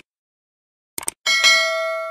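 Subscribe-animation sound effects: a couple of quick mouse clicks about a second in, then a notification bell ding that rings on with several steady tones, slowly fading.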